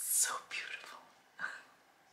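A woman's whispered, breathy voice in three short bursts within the first second and a half.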